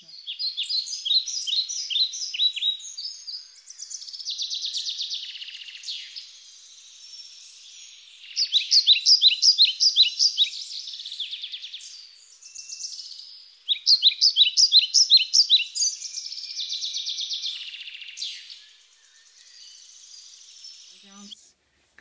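Songbirds singing: runs of quick, falling chirps come near the start, about 8 seconds in and about 14 seconds in, with buzzier trills between them.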